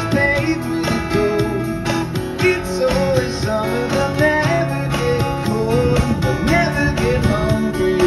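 Live acoustic guitar strummed steadily and played through a PA, in a pop-rock song, with a melody line moving above the chords.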